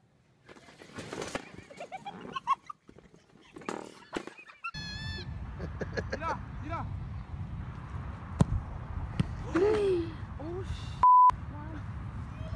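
Voices and scattered knocks, then after a cut, wind rumbling on the microphone with voices calling over it. Near the end a short steady beep blanks out everything else: a censor bleep.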